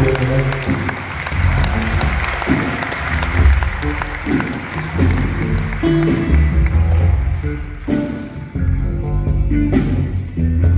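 A live band plays drum kit, acoustic guitar and bass. Audience applause runs under the first part and dies down about six seconds in, leaving the band with a steady cymbal beat.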